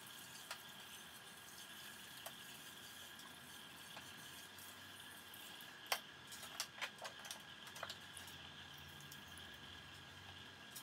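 Kitchen tap running faintly into a steel sink while plastic juicer parts are rinsed, with a few light knocks and clinks of the plastic parts, most of them about six to eight seconds in.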